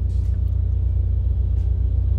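Steady low rumble of a running vehicle engine, with a fast, even pulse underneath.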